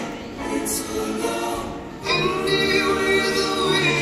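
Children's choir singing on stage, softer at first, then the full group comes in loudly about halfway through over a steady low accompanying note.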